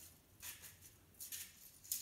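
Conifer twigs rustling faintly as they are handled and pushed into place on a tray, in three short brushing rustles.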